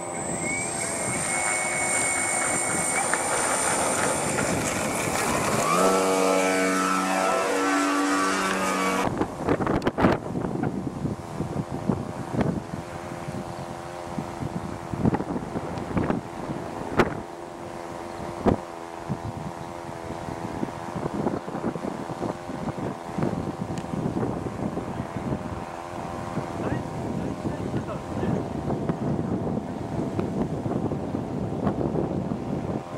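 Radio-controlled scale model of a Ki-84 Hayate fighter: its motor and propeller run at high power with a high whine during the takeoff run. About nine seconds in the sound changes to the steadier, more distant drone of the model in flight.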